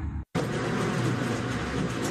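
Music cuts off abruptly; after a brief silence a steady rushing mechanical noise begins and runs on.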